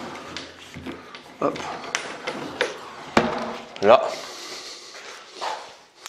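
A suspension trainer's door anchor and straps being handled: a few knocks against a door and light clicks of the strap hardware, with one sharp click about three seconds in.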